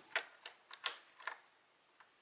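About five light, sharp clicks, irregularly spaced, over the first second and a half.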